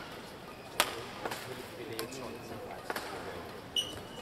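A badminton rally: several sharp racket strikes on the shuttlecock, roughly a second apart, the loudest about a second in. A short squeak of court shoes comes near the end as a player lunges.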